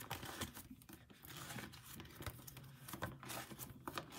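Faint crinkling and rustling of plastic photocard sleeves and clear binder pocket pages as cards are handled, with a few small clicks.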